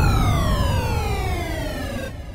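Electronic music transition effect: a synthesized tone rich in overtones glides steadily down in pitch over a deep bass rumble, fading out gradually.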